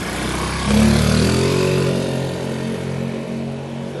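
Motorcycle engine revving up as it pulls away, rising in pitch about a second in, then holding a steady note that slowly fades as it moves off.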